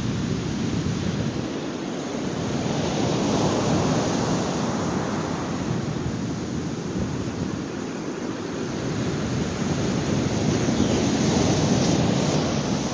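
Ocean surf washing into a cove: a steady rush of breaking waves that swells and ebbs, growing louder twice.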